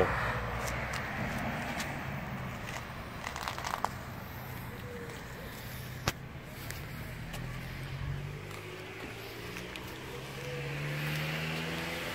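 Road traffic: cars driving past, loudest at the start and fading, with a low engine hum that swells again near the end. A few light clicks fall in between.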